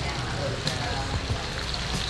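Turmeric-marinated fish sizzling steadily in hot oil in a pan over a tabletop burner as dill and spring onions are added and mixed in.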